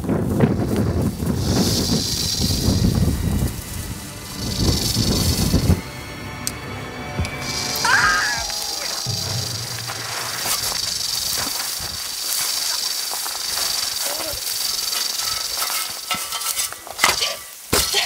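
Snake hissing: two short hisses, then one long hiss lasting about eight seconds. Wind rumble on the microphone is the loudest sound for the first six seconds.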